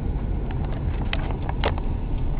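Steady low road and engine rumble inside a moving car's cabin, with a few short clicks and knocks, the clearest about one and a half seconds in.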